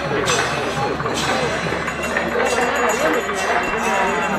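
Outdoor crowd of many people talking at once, voices overlapping with no single speaker standing out. A few brief, sharp high-pitched clashes cut through.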